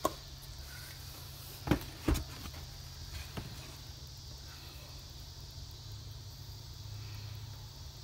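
A cardboard storage box handled on a tabletop, its lid lifted off and the box set down: two sharp knocks close together about two seconds in, then a softer knock. Insects drone steadily underneath.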